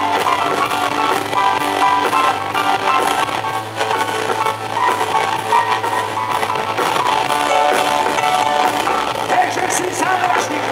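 Live rock band playing an instrumental passage through the PA: electric guitars, keyboards and drum kit, with little or no singing.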